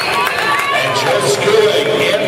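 Spectators shouting and cheering, many voices overlapping, as the swimmers race to the finish.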